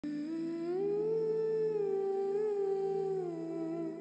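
Intro music: a slow hummed melody over a steady low drone. The tune glides up about a second in, holds, and slides back down near the end.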